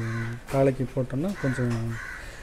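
A man speaking Tamil, with a bird calling in the background.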